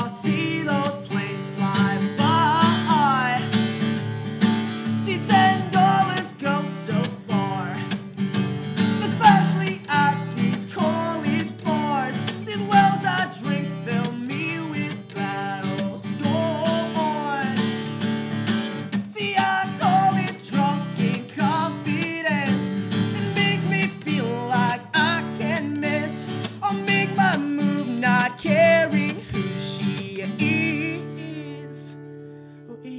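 Acoustic guitar strummed steadily in a regular rhythm, with a man singing over it: a solo acoustic song performed live.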